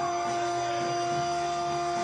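Blues harmonica played cupped against a handheld microphone, holding one long steady note.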